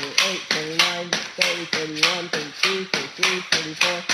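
Pogo stick bouncing on a hard floor, a sharp knock at each landing, steadily about three a second.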